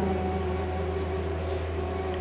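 A steady low hum with faint hiss; no voice.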